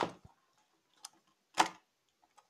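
Two clicks from handling: a faint click about a second in, then a single sharp knock about a second and a half in.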